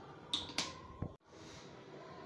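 A plastic spatula scraping and knocking against a steel frying pan full of chopped vegetables: a few short scrapes and a click in the first second, then a brief dropout and a faint hiss.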